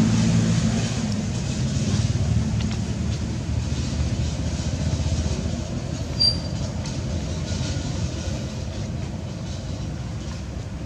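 A steady, fluctuating low rumble, with one brief high chirp about six seconds in.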